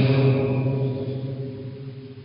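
A man's voice holding one steady low tone with no words, slowly fading out.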